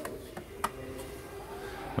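A few light clicks and knocks from a hand on the car's tailgate, the loudest about two-thirds of a second in, over low steady background noise.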